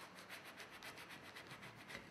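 Faint rubbing of a hand smoothing adhesive masking film down onto a pane of glass, a quick run of soft, scratchy strokes.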